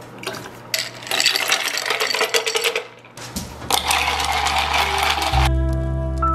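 A glass mason jar of coffee being mixed, rattling and clinking in two bursts. Music with held organ-like notes starts near the end.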